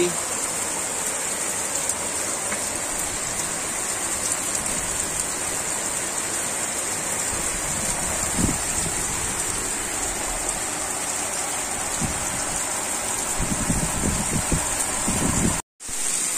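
Heavy rain pouring steadily onto a flat concrete rooftop standing in water, a dense even hiss. A few low thumps come toward the end, and the sound cuts off abruptly just before the end.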